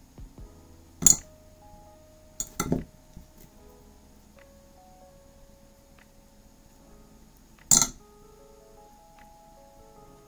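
Soft background music of sustained notes, broken by sharp clinks about a second in, a quick pair around two and a half seconds, and another near eight seconds. The clinks come from steel jewelry pliers and a metal jump ring knocking against each other and the work surface.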